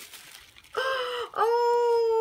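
Animated plush toy singing: a high voice with a thin, electronic sound begins about three-quarters of a second in, just after a brief rustle, and holds one long note.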